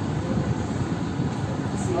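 Steady low rumbling background noise, with faint traces of a voice near the start and end.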